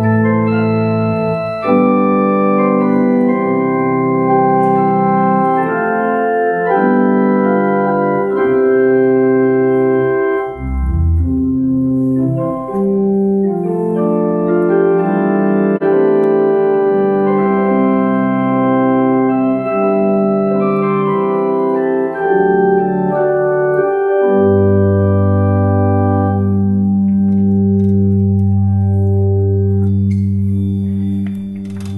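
1986 GEM Plenum electronic church organ playing slow held chords, the chords changing every second or two, with a brief deep bass note about a third of the way in and a low bass chord held through the last few seconds. It is sounding again after the repair of its CPU and backplane connectors, a fault caused by a damaged battery: it works.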